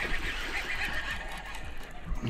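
Fishing reel cranked fast during a fight with a hooked bass, a fluttering whir that stops about a second and a half in.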